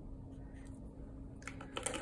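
Faint scrape of a paintbrush laying blue paint onto a cardboard planter sheet. Near the end come a few sharp clicks as the brush knocks against the plastic rinse cup.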